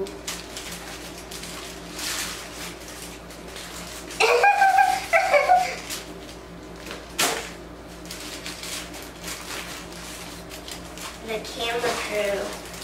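Paper burger wrapper crinkling and rustling as it is pulled off a cheeseburger, with a brief child's vocal sound about four seconds in.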